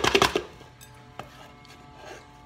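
Walnuts being chopped with a small hand chopper: a quick run of sharp strikes in the first half-second, then a single knock a little over a second in.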